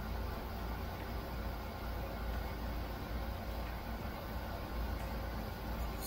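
Steady low hiss and hum of room background noise, unchanging throughout, with no distinct events.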